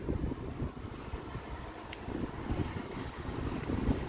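Wind buffeting the microphone outdoors: an uneven low rumble with a faint steady hiss and no clear event.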